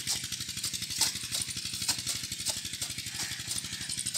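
An engine chugging steadily with a fast, even beat, under scattered sharp scrapes and knocks of hoe blades cutting into dry soil.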